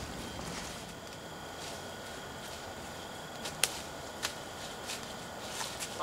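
Footsteps crunching through dry fallen leaves, with a few sharp snaps, the loudest about three and a half seconds in.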